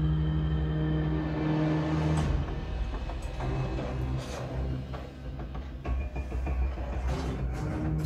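A film soundtrack played through a home cinema speaker system and heard in the room: a held low chord that breaks off about two seconds in, giving way to heavy bass with scattered sharp hits.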